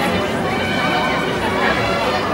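A crowd of people talking at once: a loud, continuous babble of many overlapping voices.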